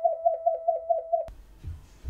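A short pulsing electronic tone, about six pulses a second, that cuts off suddenly about a second in, followed by a few low thumps.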